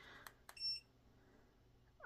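Treadmill control panel giving one short, high electronic beep as a button is pressed, just after a couple of faint clicks.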